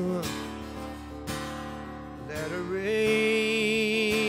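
Live song: a man's acoustic guitar strummed, a couple of strokes ringing out in the first half, then his voice joins with one long held note that wavers with vibrato over the guitar.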